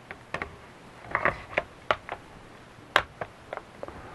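Hard plastic clicks and knocks as a DJI Phantom 4 flight battery is pushed into the drone's battery bay, with a sharper, louder click about three seconds in as the battery seats.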